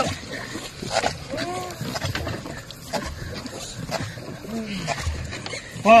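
Long-boat paddlers' wooden paddles striking the water in unison about once a second, with the rowers' grunted calls between strokes and a loud shout near the end.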